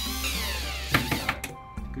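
Cordless drill/driver driving a screw through a storm door hinge into the wooden frame: its motor whine falls in pitch and dies away as the trigger is let go, with a sharp click about a second in.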